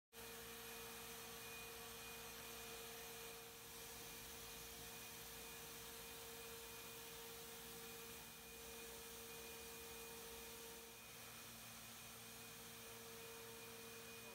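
Electric walk-behind shotblaster running as it blasts hard-troweled concrete: a faint, even machine hum with a constant whine, without a break.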